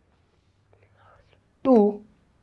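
A man's voice: a pause with a faint breathy whisper in the middle, then one short spoken word near the end.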